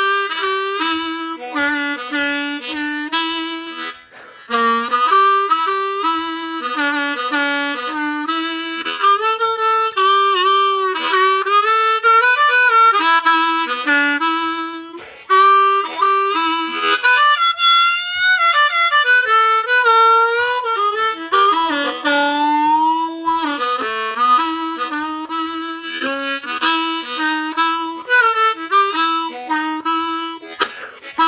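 Diatonic blues harmonica played alone, improvising a phrase full of draw bends: many notes slide down in pitch and back up, with short breaks about 4 and 15 seconds in.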